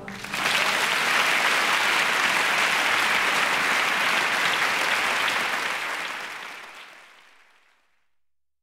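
Theatre audience applauding at the close of a live song, a steady ovation that fades out to silence over the last two seconds.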